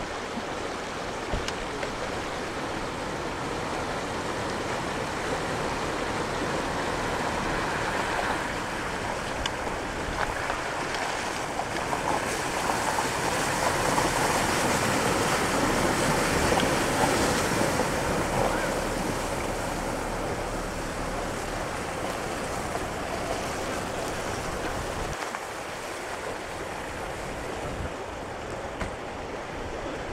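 A Toyota Land Cruiser Prado SUV wading through a shallow river: steady rushing and splashing of water at the wheels, with the vehicle running beneath it. The splashing swells to its loudest about halfway through as the vehicle passes closest, then eases off.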